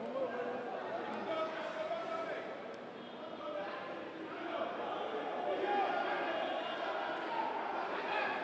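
Arena crowd noise: many voices shouting and talking at once. It eases a little about three seconds in, then builds again.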